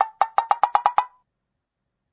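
A quick run of about eight short, pitched ticks over about a second, then they stop: a digital typing sound effect as text appears letter by letter on a phone screen.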